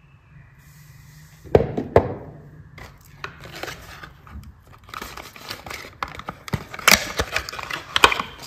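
A bar of soap is knocked down onto a table twice in quick succession, then a soap bar's paper wrapper is handled and torn open, with crinkling, rustling and sharp paper snaps that are loudest near the end.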